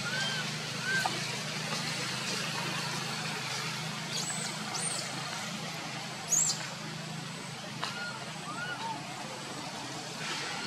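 Steady low engine-like hum, like distant traffic, under a scatter of short rising-and-falling chirping calls. Some of the calls are mid-pitched, some very high, and the loudest is a high chirp about six seconds in.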